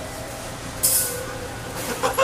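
Toronto subway car standing at a station, its equipment giving a steady low hum, with a short loud hiss of air about a second in and another brief burst of noise near the end.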